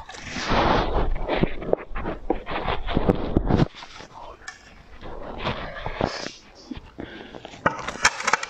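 Soft pink covering being pulled and peeled off a round moulded shape by hand, a dense crackling rustle with many small clicks for about three and a half seconds. After that it turns into quieter scattered clicks and handling noises.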